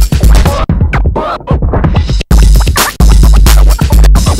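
Loud electronic dance music played from vinyl, with turntable scratching. The heavy bass drops out for about a second and a half in the middle and then the full beat comes back in.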